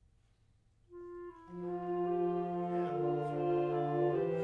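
A small ensemble of wind and brass instruments starts playing after about a second of near silence: a single pickup note comes first, then the full ensemble enters on held chords, changing chord about three seconds in.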